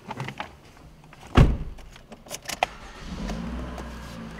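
2013 Toyota RAV4's four-cylinder engine being started with the key: a heavy thump, then keys clicking in the ignition, and the engine catches about three seconds in and settles into a steady idle.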